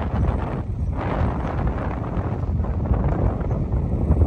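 Strong wind blowing across the microphone: a rough, uneven rushing noise, heaviest and deepest in the low end, with no clear tone.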